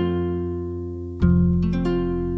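Music from a plucked-string folk band, tamburica-style: one chord rings and fades, and a new chord is struck a little over a second in and rings on.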